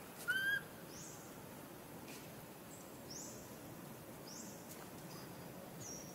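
Outdoor ambience with short, high bird chirps every second or two over a steady low background hiss. One louder, short pitched call comes about a third of a second in.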